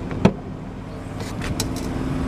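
The liftgate latch of a 2008 Jeep Commander releasing with one sharp click about a quarter second in, then the liftgate swinging up open with a few faint clicks. A low steady hum runs underneath.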